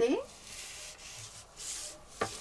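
Hands and a clear plastic pattern ruler sliding and rubbing across a large sheet of pattern paper on a table: a faint, soft brushing that grows a little louder near the end.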